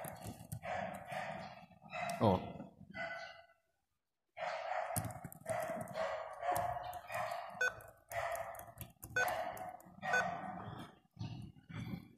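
Sharp clicks of a laptop key tapped repeatedly to get into the BIOS setup during boot, under faint voice-like background sound. A man says "oh" about two seconds in.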